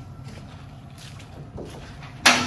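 Spring clips on a sweeper's steel engine-bay cover being released by hand: a few faint clicks and handling noises as the panel is unlatched, over a low steady hum.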